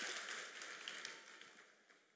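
Crowd applause dying away, with a few scattered claps, fading to near silence before the end.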